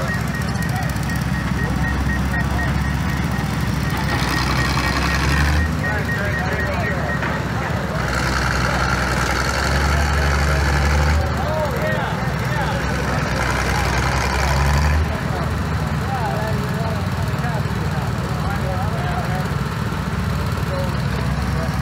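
Small engines of backhoe-equipped Gravely tractors running steadily, working harder and louder in three spells of a few seconds each as the backhoes dig.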